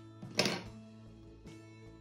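Background music with steady held notes; about half a second in, one short crisp snip of scissors cutting yarn.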